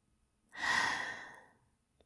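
A woman's breathy sigh, starting about half a second in and fading away over about a second.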